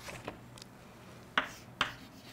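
Chalk tapping and scraping on a chalkboard as letters are written: a few short sharp clicks, with two distinct taps in the second half.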